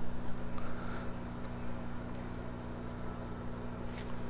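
A steady low electrical hum, with a few faint small ticks in the first second.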